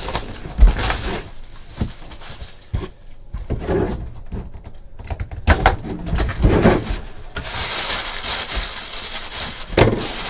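Handling of a cardboard trading-card box, with a few knocks, then a steady crinkling rustle of gold wrapping material from about two-thirds of the way in.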